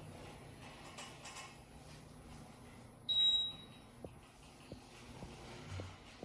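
An Otis elevator's single high-pitched electronic beep about three seconds in, starting suddenly and fading within half a second, over the faint low hum of the elevator cab.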